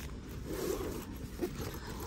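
Rustling and scraping handling noise over the low hum of a shop, a little louder for a moment about half a second in.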